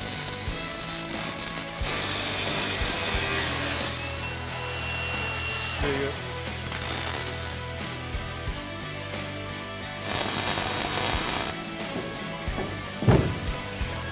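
MIG welder crackling in two bursts of about two seconds each, welding steel-tube bracing to the car's pillars, over background music. A single sharp knock comes near the end.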